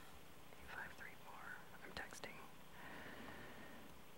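Faint, low murmured speech or whispering off-microphone, with a couple of small clicks around the middle.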